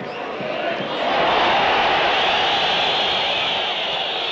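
Football stadium crowd noise swelling about a second in, then holding at a steady loud level.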